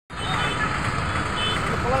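A motor vehicle's engine running with a steady low rumble, with people's voices over it.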